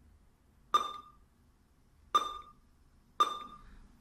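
Three short key-press beeps from the surge tester's front-panel keypad, each a click with a brief ringing tone, about a second apart.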